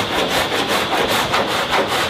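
Sandpaper being rubbed by hand over a car body panel in quick back-and-forth strokes, several a second.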